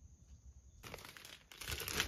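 A thin plastic bag crinkling as it is grabbed and handled, starting about a second in and growing louder near the end.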